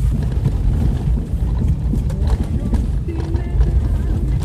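A Jeep driving slowly over a rough, rutted dirt track, heard from inside the cab: a steady low rumble with irregular knocks and rattles as it bumps along.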